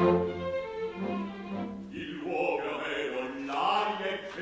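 Opera orchestra playing: a loud chord comes in suddenly after a brief hush, and the music goes on.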